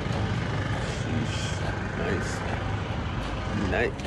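A vehicle engine running nearby: a steady low rumble under a hiss.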